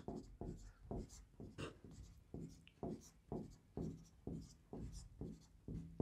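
Marker pen writing on a whiteboard: a faint run of short strokes, about two a second, as figures are written down.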